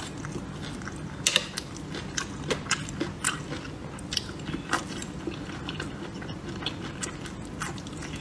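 Close-miked mouth sounds of a person chewing and biting into roasted chili peppers coated in chili oil, with irregular short sharp clicks between the chews.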